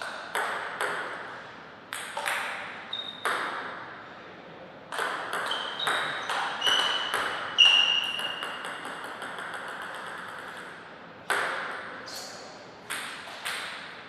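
Table tennis ball clicking off paddles and the table, sharp ringing hits in short rallies. Around the middle comes a run of ever-quicker small bounces, a ball bouncing down to rest.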